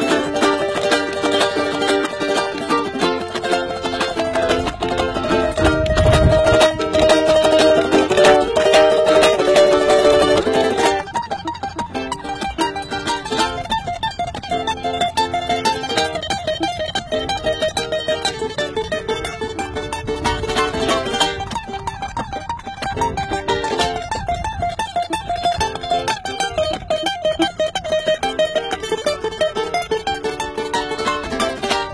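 Ukuleles playing a fast, busy picked tune. About eleven seconds in, the playing becomes quieter and lighter.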